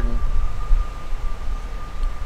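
Steady low rumble of outdoor background noise, with a faint constant high whine over it.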